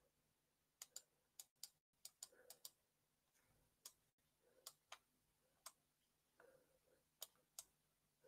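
Near silence with faint, scattered clicks of a computer mouse, about a dozen at irregular intervals.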